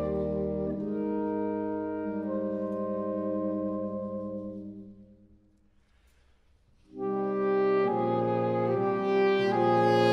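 Saxophone quartet of soprano, alto, tenor and baritone saxophones playing a sustained chord that fades away about halfway through. After about a second and a half of near silence, all four come back in together.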